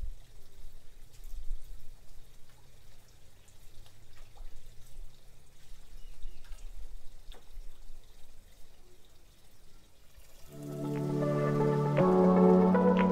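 Faint water trickling and dripping in an aquaponics fish tank, with a few small ticks. Background music comes in about ten seconds in and is much louder.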